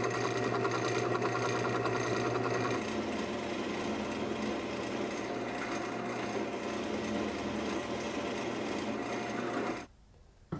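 Drill press motor running steadily while holes are bored in a pine board. The sound shifts slightly about three seconds in and cuts off suddenly near the end.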